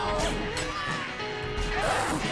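Music from the episode's soundtrack under a fight, with a few hit sound effects.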